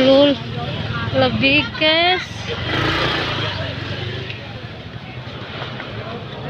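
Motorbike engines running at low speed, passing close by, amid people's voices calling out; a louder rush of noise comes a little after two seconds in.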